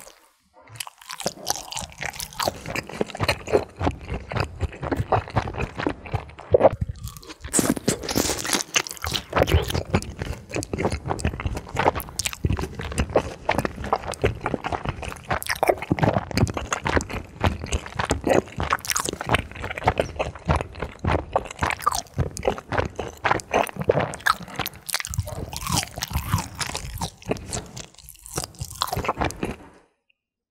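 Close-miked chewing of a glazed rice cake and sausage skewer dipped in white sauce: dense crunching and wet, sticky mouth sounds, with a short lull about seven seconds in.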